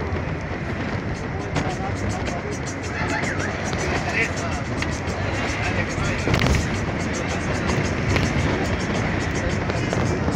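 Steady road and wind noise from a moving vehicle, with a stream of small crackles, and music and indistinct voices mixed in.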